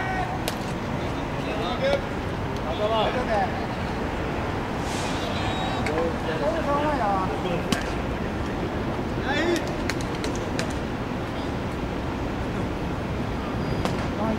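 Scattered short shouts and chatter from players on a baseball field over a steady background hiss of wind and distant traffic, with a few sharp clicks in the middle.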